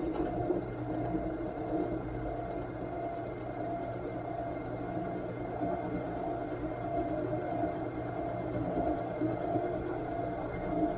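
Drill press motor running steadily while a used quarter-inch four-flute end mill, worked through a cross slide table, takes a shallow cut in a metal disc.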